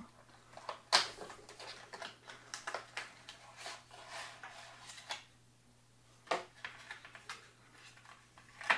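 Handling of a small product box: scattered clicks, taps and short scrapes of cardboard and plastic packaging as the printed sleeve is opened and the plastic inner tray slid out, with sharper clicks about a second in and about six seconds in.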